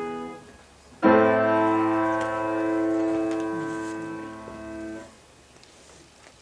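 Grand piano: a chord fades and is released just after the start, then about a second in a loud full chord is struck and held for about four seconds before the keys are let go.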